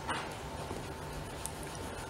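Quiet room tone with a faint steady hum, and one brief squeak or whine right at the start.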